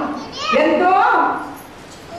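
A woman's voice preaching through a microphone: one short phrase whose pitch rises and then falls, dropping to a pause near the end.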